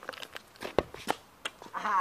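A few scattered short clicks and knocks, the loudest a little under a second in, then a woman's voice starts speaking near the end.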